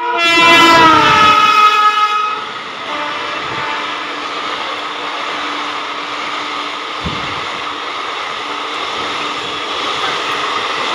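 An Indian Railways electric locomotive sounds its horn loudly for about two seconds as it passes at speed, the pitch dropping as it goes by. Then comes the steady rushing and rattling of its passenger coaches running past.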